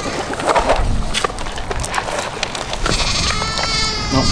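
A goat bleating: one long call near the end, over the crunching of a puppy eating dry dog kibble from a bowl.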